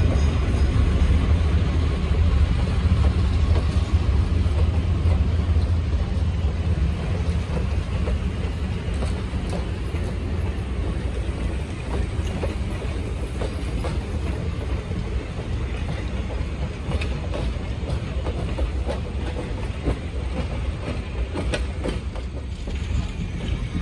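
Vintage steel passenger coaches rolling past on the rails: a steady rumble of wheels with a few faint clicks over the rail joints, slowly fading as the train draws away.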